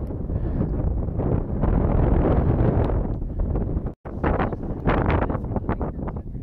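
Wind buffeting the microphone in uneven gusts. The sound cuts out for an instant about four seconds in, then the gusts go on.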